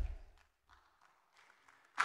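A low thump picked up by the lectern microphone as the speaker steps away from it, dying out within half a second, then near silence.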